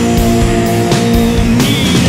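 Heavy stoner/doom rock: distorted electric guitars holding sustained notes over bass and drums, with a high wavering note entering near the end.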